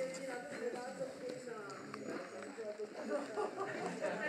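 Indistinct talk of people's voices, with no clear words.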